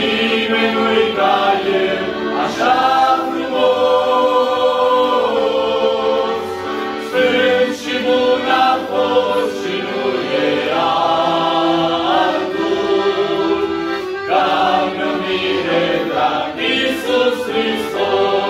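Male vocal group singing a Romanian Christian hymn in several-part harmony, with accordion accompaniment.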